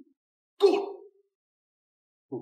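An older man's short, displeased 'hmph' grunt a little over half a second in.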